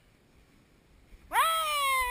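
A woman's voice giving one long, high, drawn-out wordless call, starting about a second in: it swoops up quickly, then slowly falls in pitch.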